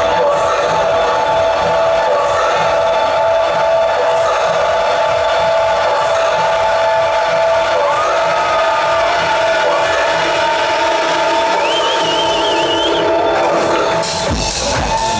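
Techno breakdown over a club sound system: steady held synth tones with the bass and kick drum dropped out, under crowd cheering and shouting.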